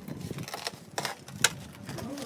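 A few sharp metallic clicks and knocks, the loudest about one and a half seconds in, from a rolled sheet of galvanized steel being handled and strapped.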